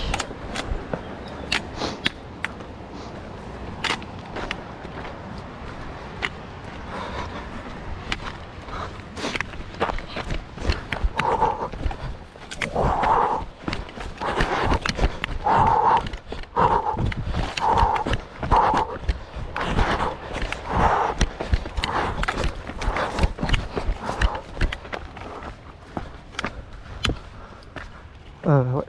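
Footsteps on a rocky mountain trail with sharp clicks of trekking-pole tips striking rock. Through the middle there is a run of rhythmic puffs, about one a second.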